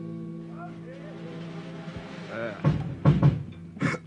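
The last of a sustained electric band chord ringing out and fading, then a few loud drum hits on the kit about three seconds in, with quiet talk around them.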